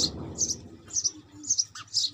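A small bird chirping, short high notes repeated about twice a second. The fading tail of a louder noise fills the first half second.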